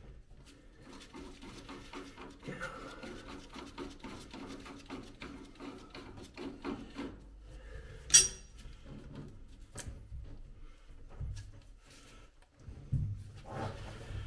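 Nut on a rusty propeller shaft coupling being worked loose by hand and with pliers: repeated small metal scrapes, rubbing and clicks, with one sharp metallic clink about eight seconds in.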